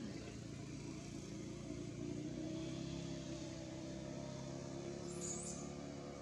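A motor vehicle engine running steadily nearby, a low droning hum that rises slightly about two seconds in. A couple of brief high chirps come near the end.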